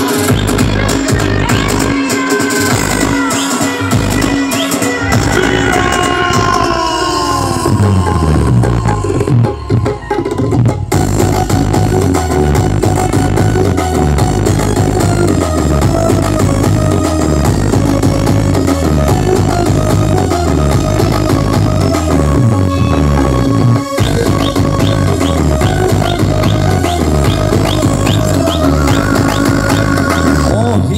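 Loud electronic dance music with a heavy, steady bass beat, played through a tall stack of DJ speaker cabinets. Falling pitch sweeps come about seven seconds in, followed by a brief break before the beat returns.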